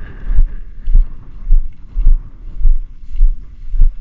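Footsteps walking through tall dry grass, picked up by a body-worn GoPro: heavy, low thuds about twice a second with the swish and rustle of grass stalks between them.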